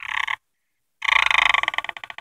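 Dry-erase marker squeaking on a whiteboard as a wavy line is drawn: a short squeak at the start, then a longer, fast rasping squeak from about a second in.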